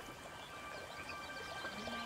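Faint film-soundtrack ambience: a quiet trickle of creek water, with soft held music notes coming in about halfway through.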